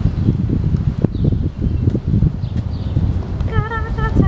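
Wind buffeting the microphone with an uneven low rumble, with a few light taps. Near the end, a brief high voice with a wavering pitch.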